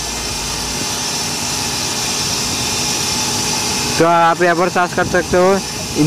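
Steady hiss of background noise for about four seconds, then a voice starts speaking.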